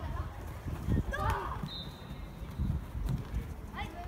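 Children's voices calling out on an outdoor football pitch, with a shout about a second in. A thin, steady high tone sounds for about a second a little before the middle, over a continuous irregular low rumble.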